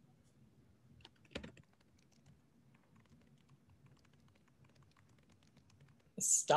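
Near silence with faint, scattered clicks, the loudest a short cluster about a second and a half in.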